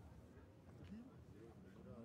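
Faint voices in the background, otherwise near silence.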